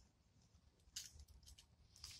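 Near silence broken by a few faint, short scratchy rustles, the clearest about a second in.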